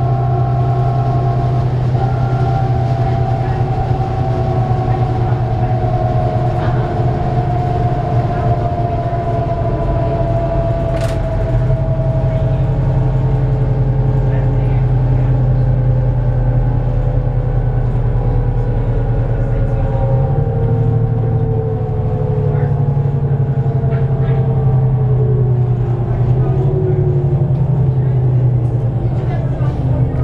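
Inside a 2008 New Flyer D35LF transit bus under way: a deep, steady rumble from its Cummins ISL diesel, with thin whining tones from the Allison driveline that slowly fall in pitch. The low rumble shifts about two-thirds of the way through.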